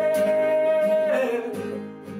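Acoustic guitar strummed in a small bathroom, under a man's voice holding one long sung note that slides down about a second in. The playing thins out near the end.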